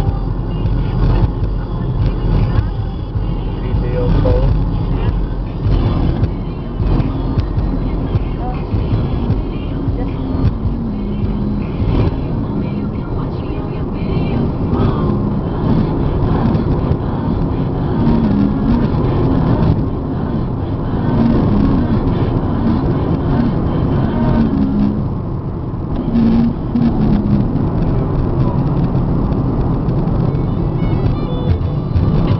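Steady engine and tyre noise heard inside a car's cabin while it drives at motorway speed.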